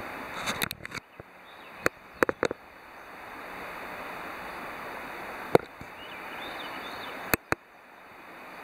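Handling noise from a handheld camera being zoomed in: a scattering of sharp clicks and taps, two close pairs in the first two and a half seconds, a loud single click about five and a half seconds in and a pair near the end. Under them runs a faint steady outdoor hiss.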